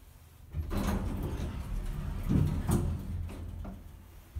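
1980s Dover elevator's sliding doors opening at the landing: a rumbling slide that starts about half a second in and runs about three seconds, with a few knocks along the way, loudest just past the middle.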